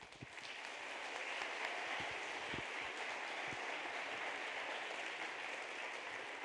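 Audience applauding, a dense round of clapping that swells in the first second and then holds steady.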